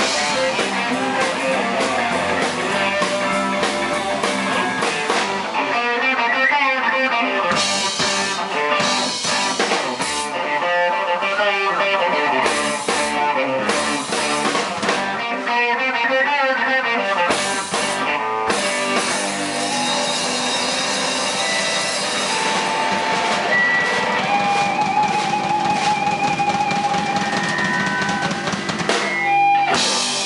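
A live rock band plays: two electric guitars and a drum kit. In the second half a guitar holds long sustained notes, and the music stops just before the end.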